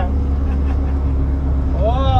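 Steady low rumble of a bus engine and road noise heard from inside the moving bus, with a steady low hum running underneath. A person's voice hums or sings briefly near the end.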